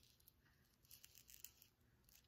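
Near silence: room tone with a few faint soft rustles.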